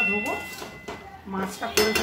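A metal spatula clinking and scraping against a metal cooking pan as food is stirred. A clink rings on at the start, and another sharp clink comes near the end.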